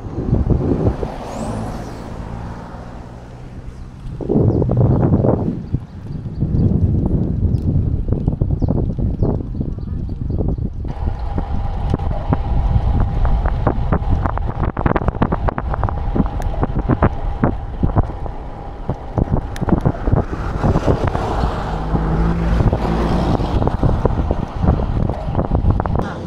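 Wind buffeting an action camera's microphone on a road bicycle riding at speed: a loud, uneven rush full of rapid flutter and jolts.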